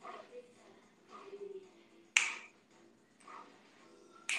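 A single sharp, loud snap about two seconds in, dying away quickly, against faint bits of voice and room noise.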